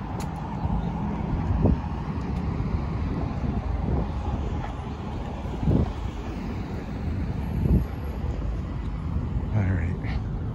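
Wind rumbling on the microphone over light city traffic, with a few short low thumps every couple of seconds.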